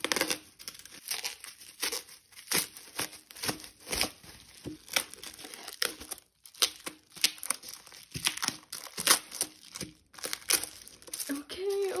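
Clear plastic shrink wrap being torn and peeled off a boxed CD album, crinkling and crackling in quick, irregular snaps.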